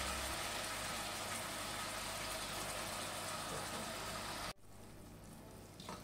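Rabbit pieces frying in a hot pan, with soy sauce poured in; a steady sizzle that cuts off suddenly about four and a half seconds in, leaving a much quieter hiss.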